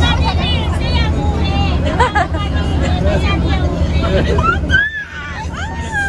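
Several people's voices and chatter inside a bus, over a low steady rumble that stops abruptly about five seconds in.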